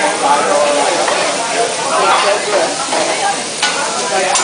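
Fried rice and vegetables sizzling steadily on a hot teppanyaki griddle, with a sharp click near the end.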